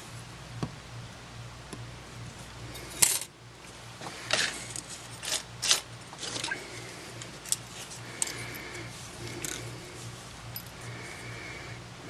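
Scattered light clicks and taps as a partly dismantled Samsung WB350F compact camera and small metal parts are handled on a metal work surface. A steady low hum runs underneath.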